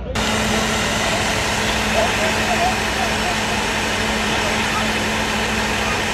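Idling emergency vehicles: a steady loud rushing noise with a low, even hum. Faint voices show through it about two seconds in.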